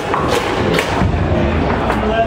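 Foosball table in play: a couple of sharp knocks from the ball and the rod-mounted men striking, within the first second, over a steady low hall rumble.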